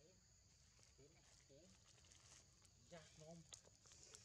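Faint outdoor ambience: a steady high drone of insects, with short soft chirping calls repeating about every half second and a few light clicks after about three seconds.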